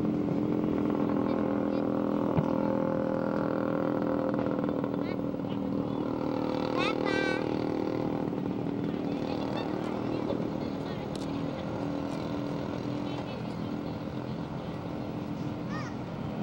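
A steady engine drone with faint voices behind it, easing off a little in the second half. A short, high rising squeal comes about seven seconds in.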